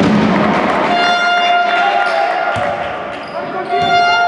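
Basketball gym ambience: a hubbub of voices, a basketball bouncing on the hardwood floor, and a long steady horn tone that starts about a second in, dips briefly near the end and comes back.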